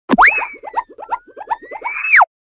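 Cartoon boing sound effect: a quick upward glide in pitch, then a fast run of short bouncy blips under a thin whistle that dips and rises again, ending in a downward glide.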